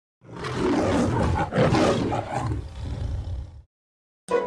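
Lion roar sound effect: a rough, deep roar that swells up in the first half second, surges again at about a second and a half, then trails off and stops shortly before the end.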